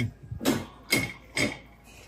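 Porcelain platter knocking lightly against a metal wire shopping cart as it is turned over: three knocks about half a second apart, one with a short ring.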